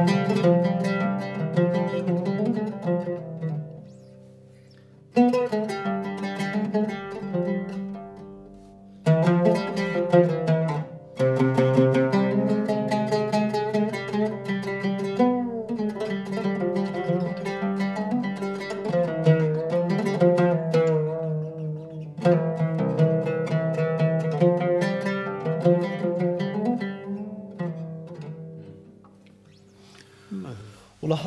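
Solo oud improvising a taqsim in maqam Huzam, plucked with a pick in quick runs of notes, in phrases broken by short pauses, fading out near the end. The Husar degree is played higher than in a plain Hijaz.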